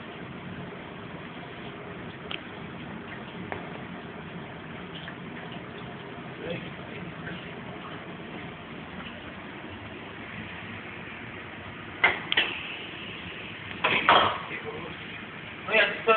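Battered fish frying in a commercial deep fryer: a steady sizzle of hot oil with occasional faint crackles. A few loud, sudden sounds break in about twelve and fourteen seconds in.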